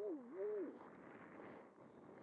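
A person humming a wavering, rising-and-falling tone that stops under a second in, followed by a soft steady hiss.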